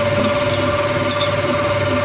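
Stand mixer running steadily, its motor humming without a break as the wire whisk beats egg whites in a steel bowl.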